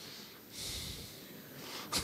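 Faint breaths near a microphone: two short hissing exhales, then a brief click just before the end.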